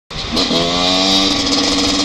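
Husaberg motorcycle engine running under way: its note climbs briefly about half a second in, then holds steady, over a steady high hiss.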